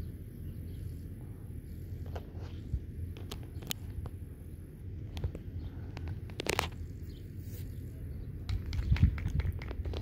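Wind rumbling on the microphone in gusts, with a few faint clicks and ticks; the rumble swells about nine seconds in.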